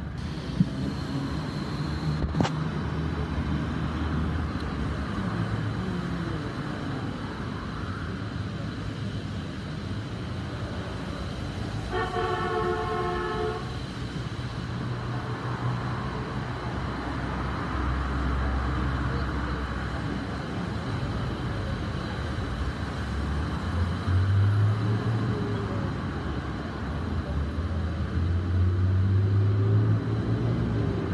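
Low, uneven background rumble, with a single horn-like chord lasting about a second and a half roughly twelve seconds in, and a brief click near the start.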